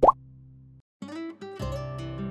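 A short rising 'pop' sound effect right at the start, as a title card appears, over the fading tail of background music. After a brief silent gap, a new music jingle begins about a second in.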